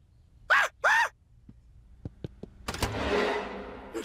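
Two short, loud worried vocal sounds from a cartoon man's voice, each rising and falling in pitch. They are followed by a few light clicks, then a knock and a hiss that fades away as a refrigerator door is swung open.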